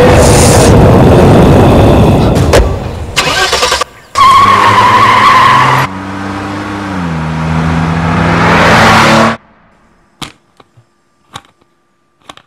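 Loud horror-film sound effects: a dense rushing noise with a held tone, then sustained low notes that step down in pitch. They cut off suddenly about nine seconds in, leaving a few small clicks.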